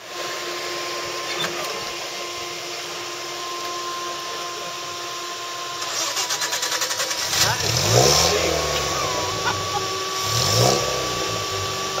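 Series Land Rover engine labouring up a steep rock climb, with a steady whine throughout. The revs rise and fall about two-thirds of the way in, and again near the end.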